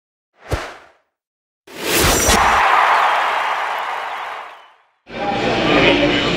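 Intro sound effects: a short whoosh, then a second later a louder whoosh with a hit that fades away over about three seconds. About five seconds in, stadium sound with voices starts abruptly.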